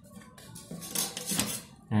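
Plastic drawing instruments, a scale and a set square, clattering and scraping against each other and the drawing sheet in a few quick knocks around the middle.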